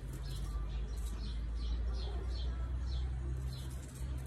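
A bird chirping over and over, short falling high notes about two a second, over a steady low hum.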